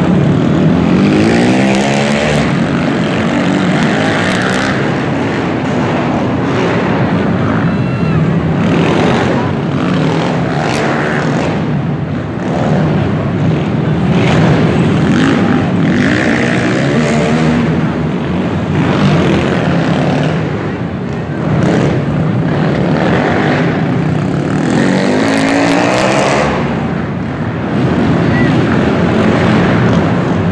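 Several sport quad (ATV) engines running hard and revving as they race an indoor dirt track, their pitch rising and falling through the corners and jumps.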